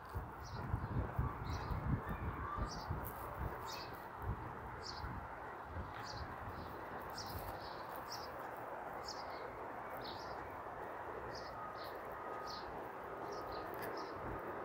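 A small bird chirping repeatedly, short high chirps coming irregularly about once or twice a second, over a steady background hum of the city street. A low rumble is heard in the first few seconds.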